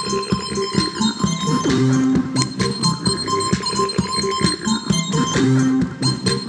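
Small handheld electronic synthesizer played with the fingertips: a quick, busy run of short pitched blips and clicks, with a couple of notes that slide down in pitch and a steady high tone running through.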